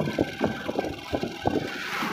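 Motorcycle engine running while on the move, with wind buffeting the microphone unevenly.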